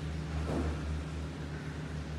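A steady low mechanical rumble, with a brief louder swell about half a second in.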